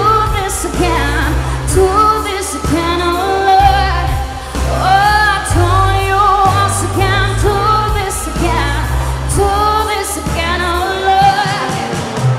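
A woman singing a pop song into a microphone over backing music with a bass line and a steady beat.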